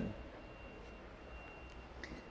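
Pause in speech: faint background hiss and hum with a thin, high-pitched steady whine that drops out and returns.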